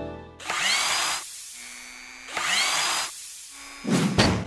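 Sound effects of an animated channel logo. Two short mechanical whirs, each with a rising whine, come about a second and a half apart, then a loud hit near the end.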